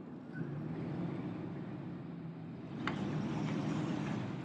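Caterpillar 535D skidder's diesel engine running steadily as the machine drives along a dirt trail, with a brief clatter about three seconds in.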